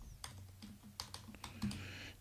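Typing on a computer keyboard: a run of faint, irregular key clicks.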